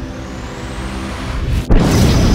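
Cinematic sci-fi sound effects: a low rumble under a rising whoosh, a sudden brief drop-out, then a loud explosion-like boom near the end.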